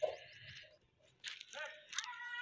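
Faint, distant children's voices calling during an outdoor game, with a quiet gap between the calls.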